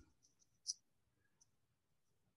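Near silence, broken by two faint short clicks: one about two-thirds of a second in and a weaker one about a second and a half in.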